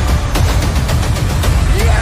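Action-movie trailer soundtrack: music with a heavy pounding beat, mixed with rapid gunfire and impact effects, and a shouted "yes!" near the end.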